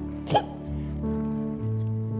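Soft, sustained background music: held chords that change slowly, twice. About a third of a second in, a short, loud burst of a person's voice cuts across it.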